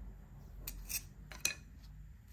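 A few short, sharp clicks and taps, about two-thirds of a second in, at one second and at one and a half seconds, from a potter's hands and a small metal-bladed tool working a clay mug handle on a granite tabletop, over a low steady hum.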